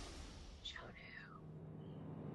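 A quick falling swoosh about two-thirds of a second in, a TV sound effect played over the title graphic, followed by a faint low music bed.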